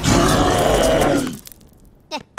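An animated rock-skinned minion character's loud, rough yell, lasting about a second and a half before it dies away.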